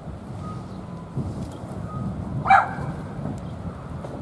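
One short, loud animal call, like a single bark, about two and a half seconds in, over a steady low rumble.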